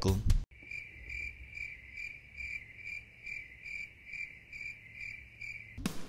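Crickets chirping, a high pulsing trill at about two and a half chirps a second that starts and stops abruptly: a stock crickets sound effect edited in for a joke's awkward silence.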